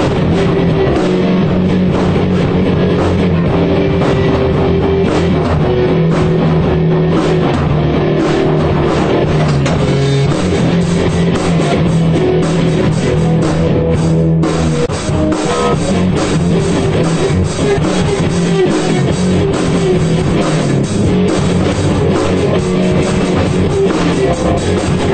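Punk rock band playing, with electric guitar and drum kit, dense and loud throughout, and a momentary break a little past halfway.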